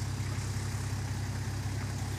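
Nissan Patrol GR Y60's engine idling steadily at low revs, with the vehicle held in a deep rut.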